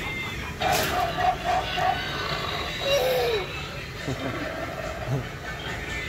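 Animated Halloween doghouse prop playing its sound effect: a run of five quick, evenly spaced calls at one pitch, then a single call that falls in pitch, over the hum of a busy store.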